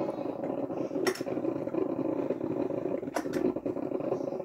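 Drip coffee maker brewing with a steady sound, broken by a couple of sharp clicks, one about a second in and one past three seconds.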